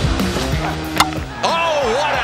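The tail of a rock music intro, then a single sharp crack about a second in as the cricket ball hits the stumps and breaks the wicket. A voice rising and falling begins near the end.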